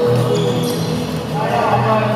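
Gym sounds during an indoor volleyball game: players' voices, sneakers squeaking on the hardwood floor, and the ball being played. A steady pitched hum or background music runs underneath.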